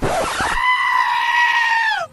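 A single loud, high-pitched scream that starts abruptly with a rasp, holds steady for about a second and a half and drops away at the end.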